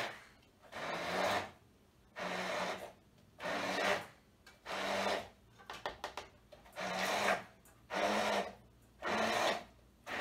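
Cilantro and olive oil being ground to a purée in a small container with a handheld tool: rhythmic rasping strokes, each about half a second long, repeating about once a second.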